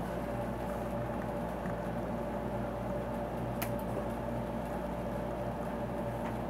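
Steady mechanical hum with a low electrical drone and a higher steady tone, like equipment running in a room, with one brief click about three and a half seconds in.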